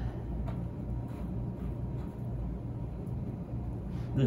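A steady low rumble in the background, with faint soft dabs of a bristle brush working resin into lightweight fibreglass cloth in a mould about every half second.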